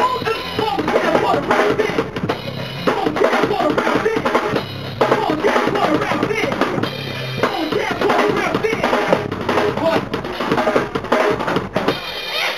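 Live hip-hop through a club PA: a drum-heavy beat with a bass line, and a rapper's amplified voice over it.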